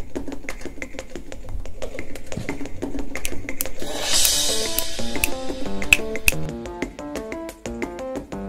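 Drum kit played fast and hard with sticks: rapid snare and tom strokes, a crash cymbal about four seconds in, and from then on a line of held pitched notes playing along with the drums.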